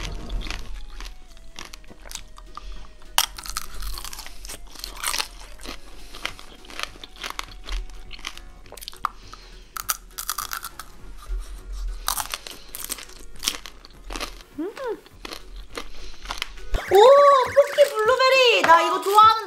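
Close-miked crunching and chewing of tanghulu, sugar-coated grapes on a skewer: the hard candy shell cracks between the teeth in many sharp crunches, followed by wetter chewing of the sour grape inside.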